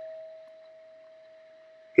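Amateur radio transceiver's CW sidetone: one steady, mid-pitched pure tone, heard while the radio is keyed down sending a carrier.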